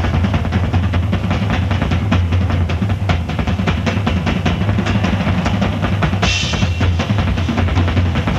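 Instrumental 1970s progressive rock from a vinyl LP, led by rapid drum-kit playing over a steady low bass line, with a cymbal crash about six seconds in.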